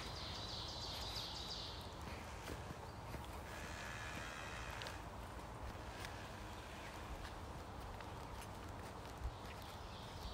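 Footsteps of a person walking steadily on a forest trail, soft and faint, with a short high trill near the start and another high call around four seconds in.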